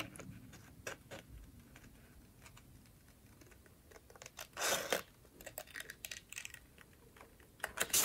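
Small scissors snipping through a sheet of vellum in short, faint cuts, scattered clicks of the blades, with one louder, longer cut about halfway through.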